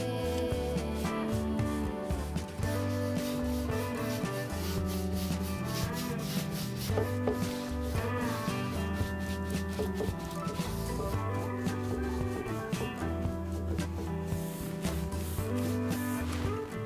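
A round bristle brush scrubbing paint onto a wooden dresser panel in many short, quick strokes, over background music.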